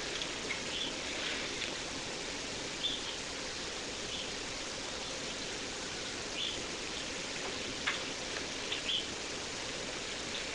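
Steady background hiss of outdoor ambience, with a few faint, short bird chirps now and then.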